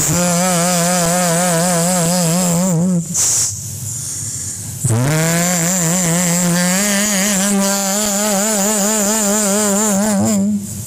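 A man's voice holding long sung notes with a wavering vibrato into a microphone. The first note lasts about three seconds and breaks off. After a pause, a second note swoops up, steps a little higher partway through, and is held on.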